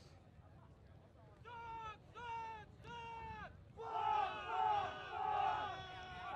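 Ultimate players shouting across the field: three drawn-out calls from about a second and a half in, then several voices calling out together near the end.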